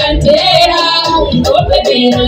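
A woman singing live into a microphone over amplified backing music with a bass beat, repeating a "ni ni ni" chant.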